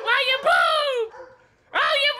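A woman squealing in a high, squeaky put-on voice without real words. Drawn-out cries fall in pitch, break off briefly past the middle, and start again near the end.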